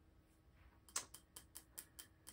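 Faint, light clicks, about four a second, starting about a second in: hands handling a small pin cushion set in a pillar candle holder.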